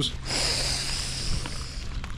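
A man taking one long, deep breath in through his nose: a steady sniffing inhale lasting about a second and a half.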